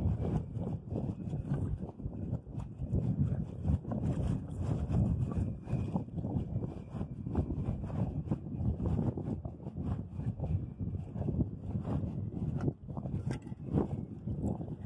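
Wind rumbling and buffeting on the microphone over moving river water at the shoreline, in uneven gusts.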